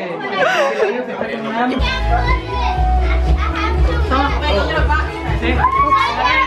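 Children shouting and playing over music with a heavy bass that comes in about two seconds in; before that a single voice exclaims.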